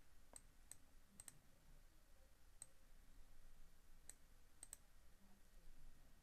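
Faint computer mouse clicks, about eight at irregular spacing, some in quick pairs, over near-silent room tone.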